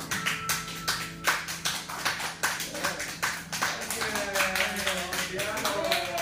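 A small audience clapping, starting just as the final piano chord dies away, with voices calling out over the applause in the second half.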